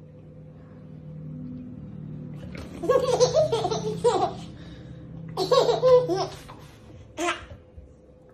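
Baby laughing: two bursts of belly laughter, about three and five and a half seconds in, and a short giggle near the end.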